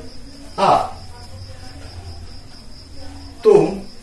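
A steady high-pitched tone, with a low hum beneath it, runs between two short words from a man's voice, about a second in and near the end.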